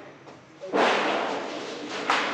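Mechanical sheet-metal shear cutting steel sheet: one sudden loud crash about two-thirds of a second in as the blade beam comes down, ringing on and fading slowly.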